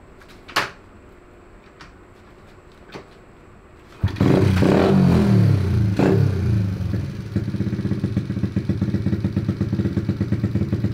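Honda Z50R mini bike's rebuilt 108cc big-bore four-stroke single, with racing head and camshaft, started about four seconds in after a few quiet clicks. It revs up and down briefly, then settles to a steady, mean-sounding idle.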